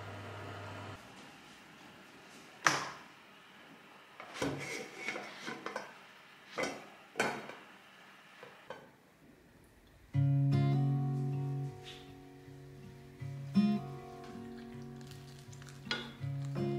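A metal pot's lid and tableware knocking and clinking as the pot is handled at a table: a handful of separate sharp clatters. About ten seconds in, acoustic guitar music starts.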